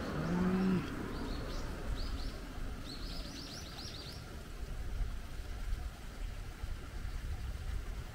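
Small birds chirping in short high notes, ending in a fast trill of about eight chirps a second around three to four seconds in, over a steady low rumble. A brief low tone sounds right at the start.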